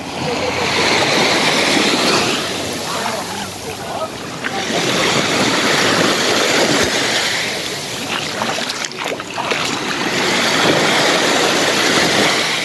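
Small waves breaking and washing up onto a sandy shore. The surf swells and fades three times, every three to four seconds.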